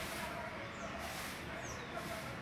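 A caged songbird giving short, high, down-slurred chirps, twice, over a noisy background with faint voices.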